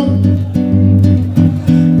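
Live samba accompaniment in G major: acoustic guitar strumming chords over a steady bass line, with the chords changing twice and no singing.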